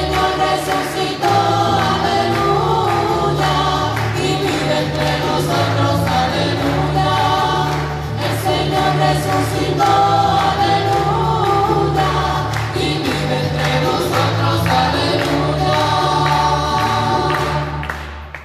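A hymn sung by a choir with instrumental accompaniment, with a steady bass line under the voices. It fades out at the end.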